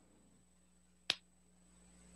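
A single sharp click about a second in, over faint steady room tone with a low hum.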